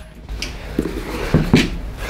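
Handling noise from leather cut-outs being slid and gathered on a wooden desktop, with a few soft knocks near the middle.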